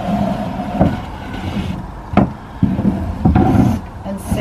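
Wooden parts of a storage box and loose timber battens being shifted on a van floor: scraping and knocking of wood on wood and floor, with a sharp knock about two seconds in and a louder spell of scraping near the end.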